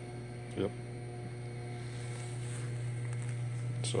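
A steady low mains-type electrical hum that grows slowly a little louder.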